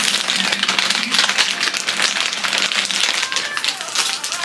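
Plastic candy wrappers crinkling and crackling as king-size Reese's packs are handled and set into a plastic basket.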